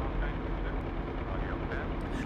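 Low rumble lingering after a drone-strike explosion, fading to a steady hazy noise.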